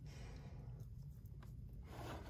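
Quiet room with faint handling of a cardboard box in the hand, and one light tap about one and a half seconds in.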